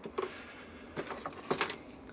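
A few faint clicks and rustles of objects being handled and moved on a workbench.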